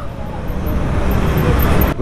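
Steady rushing noise from wind on the microphone, mixed with road and traffic noise, while riding an electric scooter through city traffic. The scooter itself adds no engine sound.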